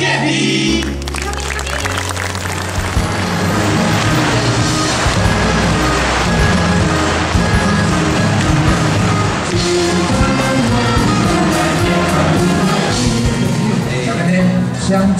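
A group of singers singing a song together through microphones over backing music with a steady bass line, which comes in about a second in.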